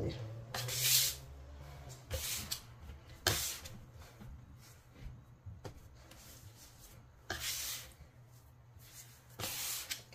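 Spatula scraping and lifting bread dough off a countertop as flour is worked into the dough, in about five short scraping strokes a second or two apart.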